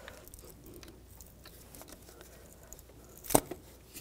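Faint handling of plastic ignition-coil connectors, then one sharp plastic click near the end as a coil wiring connector is pried loose with a flat-blade screwdriver.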